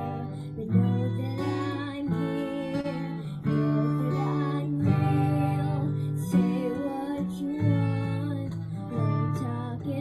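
Acoustic guitar strumming chords that change every second or so, accompanying a young girl singing into a microphone.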